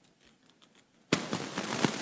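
Faint scattered clicks, then from about a second in a loud crackling rustle punctuated by sharp clicks: handling noise close to a microphone.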